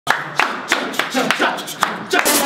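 A group of footballers clapping their hands together in a steady rhythm, about three claps a second, with voices between the claps.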